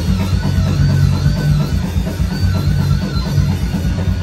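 Live metal band of electric guitars, bass guitar and drum kit playing loudly. A lead guitar line repeats a short rising-and-falling phrase over a dense, driving low rhythm.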